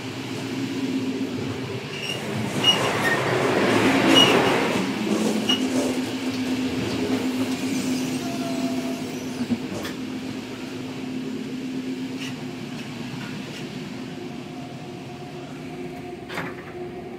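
Running noise of a sleeper train heard from inside a coach: a steady rumble with a low hum. It swells louder for a few seconds, peaking about four seconds in, with a few short high clicks, then settles back.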